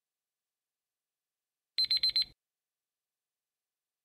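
Digital countdown-timer alarm going off as the timer runs out: four quick, high-pitched beeps in about half a second, roughly two seconds in.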